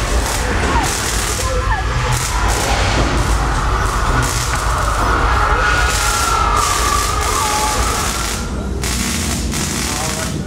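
Staged earthquake special effect in a subway-station film set: a loud, continuous deep rumble with scattered crashes, and a wavering high tone through the middle.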